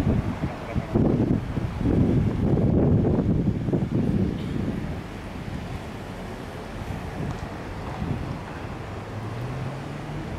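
Wind buffeting the microphone in strong gusts for the first four seconds or so, then easing to a quieter, steady low rumble. A faint low hum comes in near the end.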